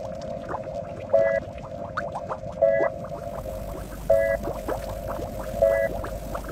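Heavily pitch-shifted and distorted cartoon soundtrack: a steady droning tone with a louder pulse that repeats about every second and a half, and quick upward chirps in between.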